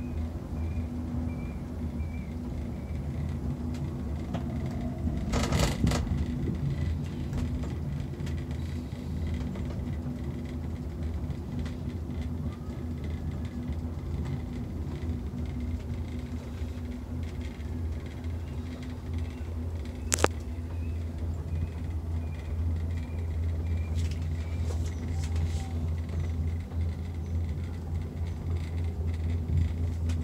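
Steady low rumble and hum inside a cable-car gondola as it runs along its cable. A brief clatter comes about five seconds in, and a single sharp click about twenty seconds in.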